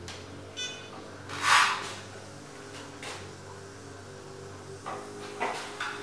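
A short electronic beep from the iOptron CEM60 mount's electronics as it is switched off and back on, followed about a second later by a loud brief rush of noise and a few faint knocks near the end, over a steady low hum.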